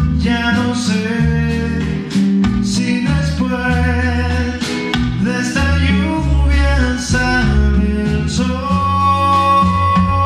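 Live band music led by a semi-hollow electric guitar playing a melody of single notes over a bass line.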